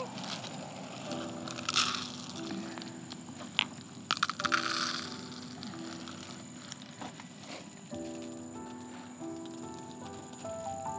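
Background music with soft held notes over short bursts of plastic crinkling and crunching from a bag of dry cat food being handled: about two seconds in, and again from about four to five seconds in.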